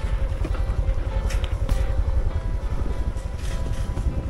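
Motorcycle running along a dirt track, its engine and wind buffeting the microphone as a continuous low rumble. Background music plays over it.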